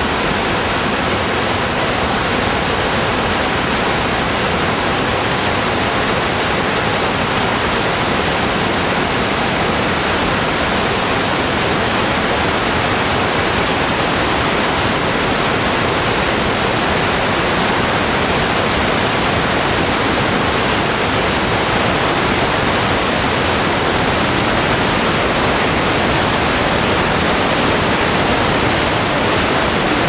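Loud, steady static hiss: an even noise with nothing else in it. It is a fault on the recording's sound track rather than a sound in the room.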